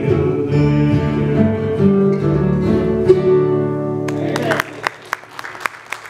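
Bluegrass band with acoustic guitars and upright bass playing the last held chords of a song, which stop about four and a half seconds in. Scattered audience clapping starts just before the music ends and carries on to the end.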